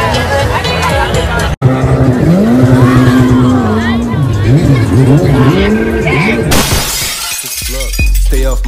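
Party music and crowd chatter, cut off suddenly; then a jet ski engine revving up and down, its pitch rising and falling several times, followed near the end by a loud rushing noise.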